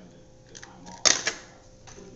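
Plates and cutlery handled while cake is served: a few light clicks and one sharper clack about a second in.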